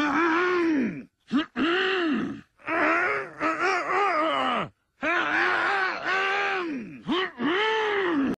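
Several men's voices in turn making low, drawn-out throat-clearing groans, a 'hrmm' about a second long whose pitch rises and then falls, one after another with short gaps and a couple of quick clipped ones. They act out hoarseness, a 'cat in the throat'.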